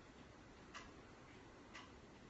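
Near silence with a clock ticking faintly, two ticks about a second apart.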